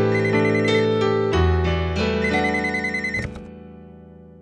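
A landline telephone ringing twice with a trilling electronic ring, each ring about a second long, over soft piano chords; the piano fades out near the end.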